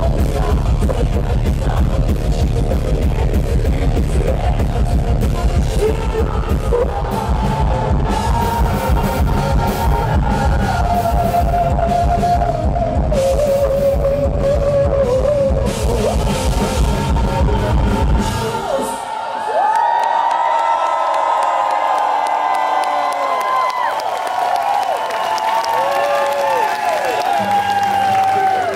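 Live heavy metal band playing with distorted electric guitar, bass and drums, the song ending abruptly about two-thirds of the way in. The crowd then cheers, shouts and whoops.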